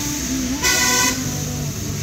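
A car horn sounds once in a short honk of about half a second, a little over half a second in, over the low running of the car's engine.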